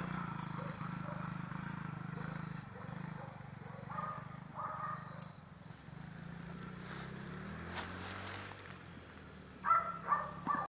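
A child's small ride-on vehicle's motor running with a steady drone, fading over the first few seconds as it drives off.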